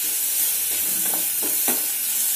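Sliced mushrooms sizzling in hot oil with mustard seeds and curry leaves in a metal kadai as they are stirred and sautéed. A few short clicks of the stirring come about a second in.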